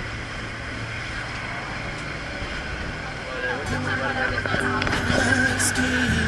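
A tourist boat's engine running steadily under passengers' voices, growing louder a little past halfway.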